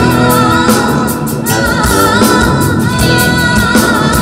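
Female vocalist singing in Javanese sinden style, holding long wavering notes, over a live jazz-fusion band with drums, bass, guitar and keyboards.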